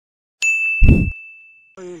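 Intro sting: a bright ding that rings on for over a second, with a short deep boom hitting just after it, the loudest part.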